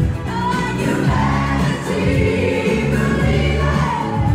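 Loud party music with singing: a woman singing into a handheld microphone while a group of people sings along.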